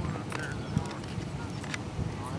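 A burning truck fire crackling, with scattered sharp pops at uneven intervals over a steady low noise.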